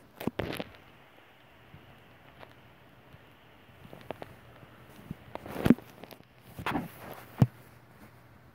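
A few short rustles and bumps close to the microphone, with a cluster at the start and louder ones in the last third, ending in a sharp click, over a faint low hum.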